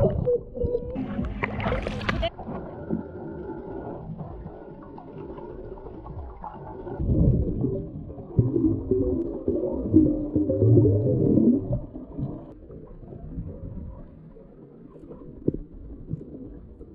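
Underwater audio from a camera just dipped below the sea surface: a splash and bubbling in the first two seconds, then a muffled rumble. Low, wavering, voice-like sounds come through between about seven and twelve seconds in, then fade.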